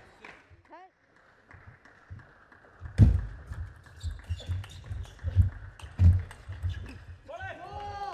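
Table tennis rally: a celluloid-style plastic ball clicking off rubber rackets and the table, with the players' shoes thudding on the court floor, the loudest hits about three and six seconds in. A voice calls out near the end as the point finishes.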